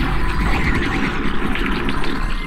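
Designed soundtrack: a loud, steady low throbbing hum under a busy, textured noisy layer.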